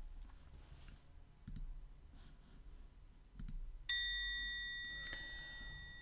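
A single bright bell-like chime struck about four seconds in, ringing with several high tones together and fading away over about two seconds. A few faint soft knocks come before it.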